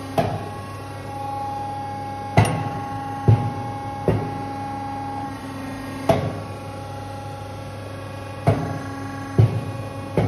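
Cosmetic powder press machine running with a steady hum, broken by about seven sharp knocks at uneven intervals as the press and its mold tray work.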